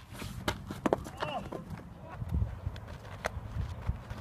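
Wind rumbling on the microphone outdoors, with a few sharp clicks and faint voices in the background.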